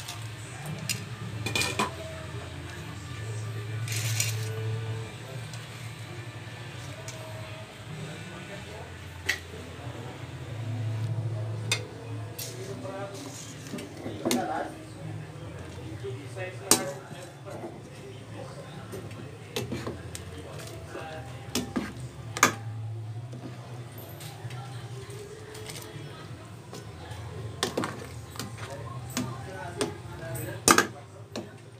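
A metal ladle stirring udon noodles in an aluminium cooking pot, with scattered sharp clinks and knocks against the pot over a steady low hum.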